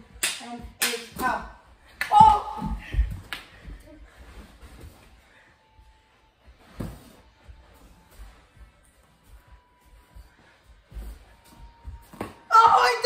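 Sharp knocks of mini hockey sticks hitting a small ball during play: a quick cluster of hits in the first few seconds, another single hit about seven seconds in, with quieter stretches between.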